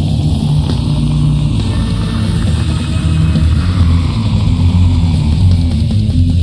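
Blackened death metal from a 1997 promo cassette: distorted guitars, bass and drums playing continuously, loud and heavy in the low end.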